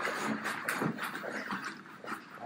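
Footsteps climbing a staircase, with the rustle and knock of a handheld camera being carried: a run of irregular scuffs and taps.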